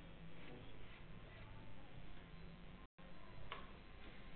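Faint light clicks of five-pin billiards pins being set upright on the table by hand, over a steady low hum; the sharpest click comes about three and a half seconds in. The sound cuts out briefly just before three seconds.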